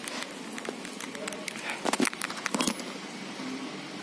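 Indoor room ambience with faint, distant voices over a steady low hum. A scatter of sharp clicks and taps falls in the first three seconds.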